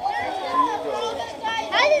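Voices, children's among them, talking over one another with excitement, and a high-pitched voice rising near the end.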